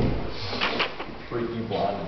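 People talking in a small group, with a sharp knock right at the start.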